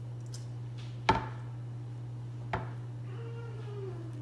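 Two sharp knocks about a second and a half apart from a frying pan being handled as dough is patted into it, over a steady low hum.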